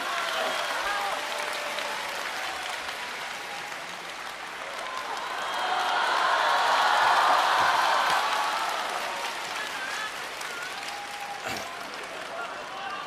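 Theatre audience applauding after a comic punchline. The applause swells to its loudest about midway, then eases off toward the end.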